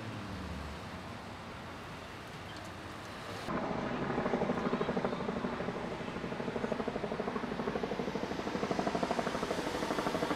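Low steady outdoor hum, then about three and a half seconds in a louder mechanical drone starts suddenly and keeps pulsing rapidly and evenly.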